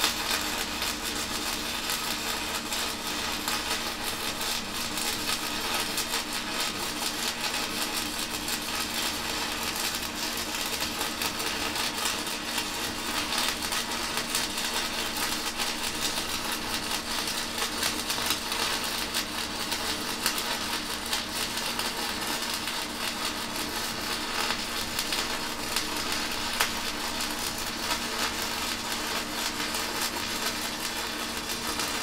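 Stick-welding arc from a 4 mm basic-coated UONI-13/55 electrode run at full current, about 200 A: a steady, unbroken crackling hiss with a few sharper pops. The arc is burning smoothly and stably.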